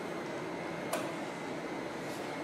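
Steady background hum and hiss of a train station's underground concourse, with one sharp click about a second in.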